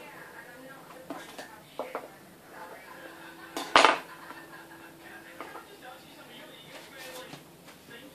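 Soft handling sounds of a sponge cake being trimmed with a knife and the cut piece lifted off a foil cake board: a few light knocks, and one louder clatter a little before halfway.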